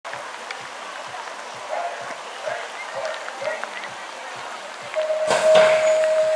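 BMX starting system: an electronic start tone sounds and a moment later the start gate drops with a loud clatter as the riders push off, the long final tone carrying on. Before it, faint voices and a soft ticking about twice a second.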